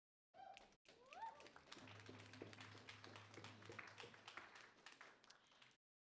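Faint hall sound between speakers at a podium microphone: scattered short clicks and a faint voice-like rising sound about a second in, with a low hum for a couple of seconds in the middle.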